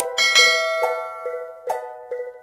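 A bright bell-like notification chime, the sound effect of an animated subscribe-and-bell overlay, struck just after a short click near the start and ringing out over about a second. Plucked ukulele background music plays under it.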